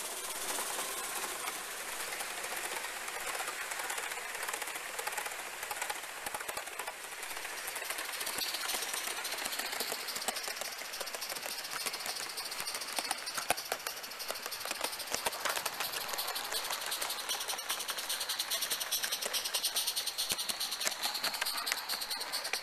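Gauge One live-steam model locomotive running with its train: steam hissing and a fast run of clicks from exhaust beats and wheels on the rail, denser in the second half.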